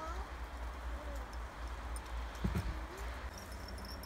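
A few short rising bird calls over a steady low rumble, with two soft thumps about two and a half seconds in.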